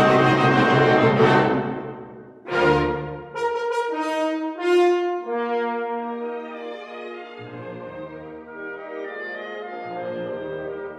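Orchestral background music led by brass: a loud full passage fades away about two seconds in, and a slower phrase of held notes follows.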